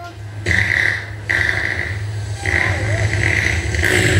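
Loud, distorted sound from a stage show's loudspeakers over a crowd, with a steady low hum underneath. Harsh bursts of noise come about half a second in and again from about two and a half seconds on.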